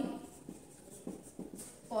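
Dry-erase marker writing on a whiteboard: a handful of short, separate strokes as a word is written.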